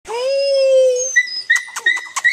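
A puppy whining: one long, steady whine for about a second, then a thinner, higher-pitched whine.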